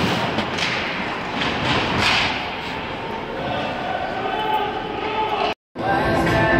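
Hockey rink din: repeated thuds and slaps of pucks and sticks hitting the boards and glass close by, over a hubbub of voices in a large arena. The sound cuts out abruptly near the end.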